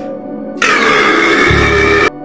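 A meme clip's audio: soft steady background music, then a sudden, very loud, distorted blast about half a second in. A deep bass rumble joins it near the end, and the blast cuts off abruptly.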